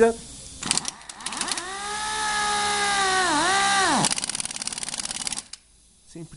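Pneumatic capping machine's air motor spinning up to a steady whine at a raised speed setting, its pitch sagging briefly under load before recovering. It then stops, followed by rapid even ticking with air hiss for about a second and a half.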